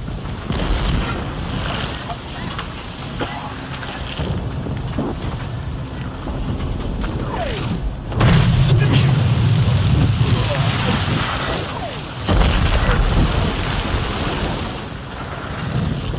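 Landing craft (LCVP) crossing rough sea: engine and hull noise under rushing water, spray and wind. The sound swells sharply twice, about eight seconds in and again after twelve seconds.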